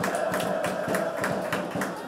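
Football match ambience in an open-air stadium during play: a small crowd's murmur and voices with frequent short, sharp knocks or claps.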